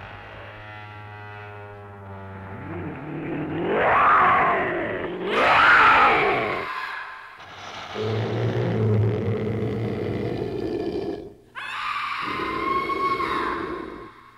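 Haunted-house sound effects: over a low eerie drone come two long, loud, rising-and-falling monstrous groans, then a rough roar, a sudden break, and a high wail near the end.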